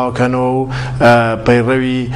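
A man speaking Kurdish, drawing out several long, held syllables.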